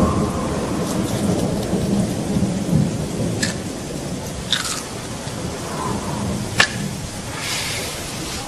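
Thunderstorm: rain falling steadily with a low rumble of thunder, and a few short sharp ticks scattered through it.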